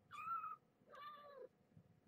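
A seventeen-day-old kitten mewing twice: two short, high-pitched mews, each about half a second long.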